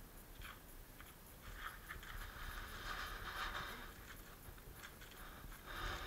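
A donkey nibbling and chewing at its own hind hoof and leg: faint crunching and scraping, heaviest in the middle and again near the end.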